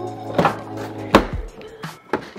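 Background music, with the clunk of a Ford/Mercedes-type van door being unlatched and pulled open: a click about half a second in and a louder sharp clack a little past one second.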